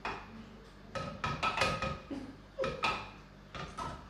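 Long metal spoon stirring juice in a glass jug, clinking against the glass in irregular clusters of short ringing strikes.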